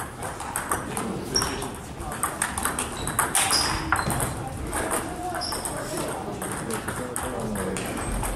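Table tennis balls clicking off bats and tables at several tables in a sports hall, an irregular patter of light ticks, with voices talking among the players.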